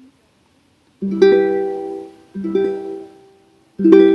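Ukulele playing an E minor chord three times, starting about a second in, each chord left to ring and fade before the next.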